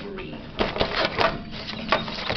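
A scale clattering and clicking as cats bat at it, with a quick run of sharp knocks from about half a second in.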